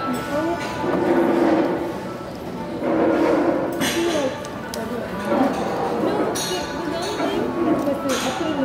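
Restaurant dining-room hubbub: voices talking over background music, with a few sharp clinks of glass.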